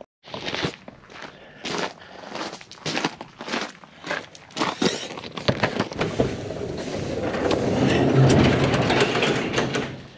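Footsteps crunching on gravel, about two steps a second. About six seconds in, a garage door is lifted by hand and rumbles up along its tracks, growing louder; this is the loudest sound.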